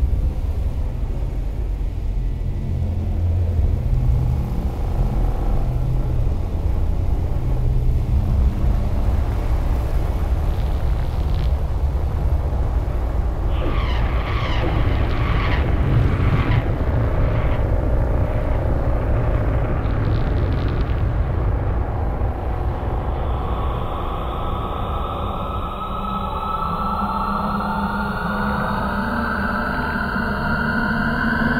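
Dark film-soundtrack drone with a heavy low rumble throughout. Wavering higher tones come in around the middle, and a tone rises steadily over the last third.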